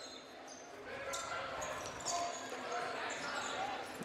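Game sounds in a gymnasium: a basketball dribbled on the hardwood court under a steady murmur of crowd and players' voices.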